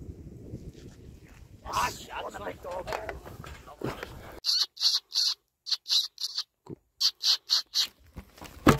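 Rapid high-pitched squeaks in quick groups of three or four, starting about halfway through: a squeak call of the kind fox lampers use to draw a fox toward the lamp.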